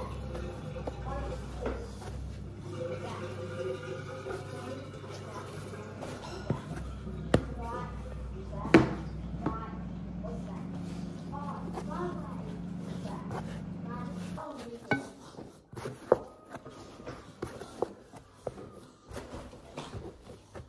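Indistinct voices in the background over a steady low hum that stops about two-thirds of the way in. A few sharp knocks break through, the loudest just before the middle.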